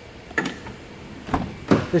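Handling noises in a minivan's interior around the front door: a few sharp clicks and knocks, the last and loudest a thump near the end.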